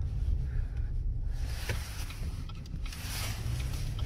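Cabin noise inside a 2021 GMC Canyon pickup on the move: a steady low engine and road rumble, with a hiss that swells about a second in and eases near the end.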